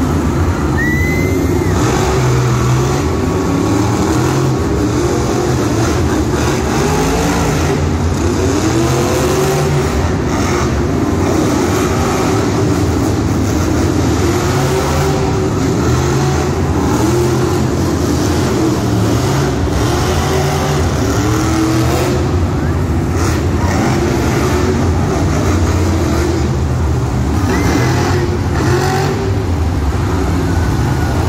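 Monster truck supercharged V8 engines revving again and again, the pitch rising and falling every few seconds over a steady deep rumble, echoing through an indoor arena over crowd noise.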